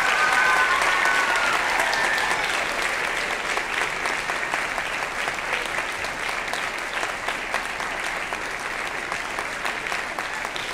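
Audience applauding at the end of a choir song, with a few cheering voices in the first couple of seconds; the clapping slowly tapers.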